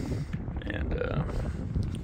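Wind buffeting the microphone as a low rumble, with a short, low vocal sound about a second in.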